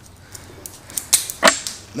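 Ordinary Fiskars scissors cutting through a quarter-inch wooden twig: a run of small crunching clicks as the blades bite into the wood, with two louder snaps about a second and a second and a half in as it cuts through.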